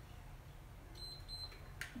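A short, high electronic beep from an interval workout timer about a second in, over a faint low hum.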